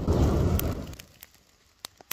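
Milkweed fluff catching a lighter's spark and flashing into flame: a sudden whoosh that dies away within about a second, followed by a few sharp clicks near the end.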